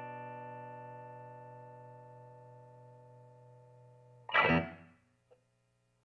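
Tom Anderson Hollow T Classic electric guitar letting a final chord ring and slowly fade. About four seconds in, a short loud burst of string noise cuts across it, followed by a faint click.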